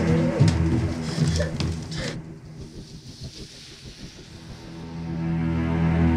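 Dark horror film score: low sustained drone tones, with short wavering, gliding sounds and a few clicks over them in the first two seconds that cut off abruptly. The music then falls quiet and swells back up near the end.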